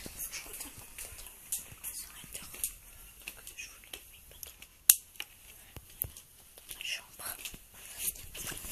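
Clothing rustling and handling noise right against the camera's microphone, with scattered small clicks and one sharp click about five seconds in.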